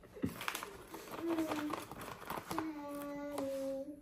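Light crinkling of a foil coffee bag and a few small clicks as a teaspoon scoops ground coffee out of it. A voice then holds a sung note, a short one near the middle and a longer one in the second half that falls slightly in pitch at the end.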